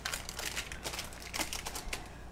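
Paper crinkling as cookie dough is handled on a sheet of paper, a run of quick, irregular crackles and small clicks.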